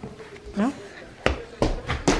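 Adidas Freak Spark football cleats clacking on a hard plank floor as a boy runs in them: a few sharp steps, about three a second from about a second in.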